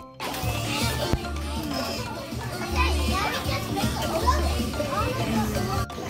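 A group of young children talking and calling out over one another, with background music underneath.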